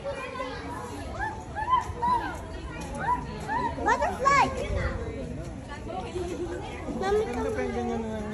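Children's voices and people chattering, with a run of high, rising-and-falling calls in the first half.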